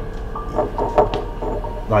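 Indistinct voices of people talking, with a faint steady tone underneath.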